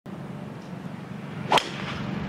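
Golf tee shot: a wood's club head strikes the ball once with a single sharp crack about one and a half seconds in, over steady background noise.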